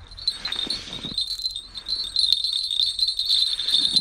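Small bells on the tip of an ice-fishing rod jingling continuously as the rod is handled and reeled, louder from about two seconds in.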